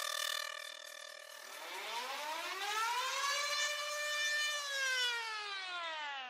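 Siren-like sound effect: a steady, rich tone that glides up in pitch from about a second and a half in, holds briefly at the top, then slides back down, falling away near the end.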